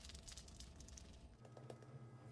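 Near silence with a faint patter of salt and pepper being sprinkled onto a tied raw pork loin, dying away after the first second or so.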